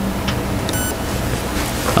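Steady rushing background noise with a faint low hum and a few faint clicks, like an open microphone on a call line.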